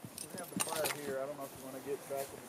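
Light metal jingling and clinking of horse tack, with a few sharp clinks about half a second in, over a voice talking in the background.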